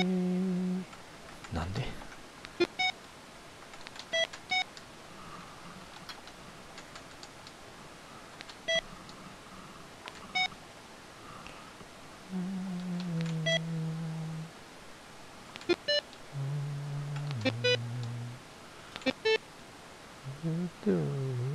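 Guitar Pro notation software playing back preview notes as they are entered: a dozen or so short, high electronic note blips. There are also three longer low tones, each holding steady and then stepping down in pitch: one at the very start, one about twelve seconds in and one about sixteen seconds in.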